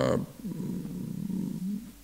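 A man's voice: the tail of a spoken word, then a long, low, creaky hesitation sound held for about a second and a half before he speaks again.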